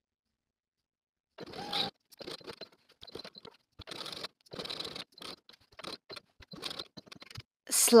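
Fabric being handled and moved at a sewing machine: short, irregular rustling and scraping bursts with a few light clicks, starting about a second and a half in.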